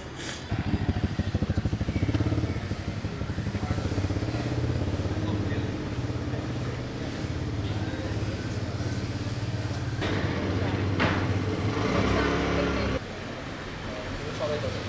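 Street traffic: motorbike engines running and passing, with a steady low engine hum and a louder pass about ten seconds in.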